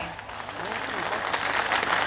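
Audience applause that grows louder over about two seconds.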